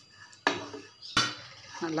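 Wooden spatula stirring and scraping dry grain flakes being roasted in a nonstick frying pan, with two sharp knocks of the spatula against the pan about half a second and a second in.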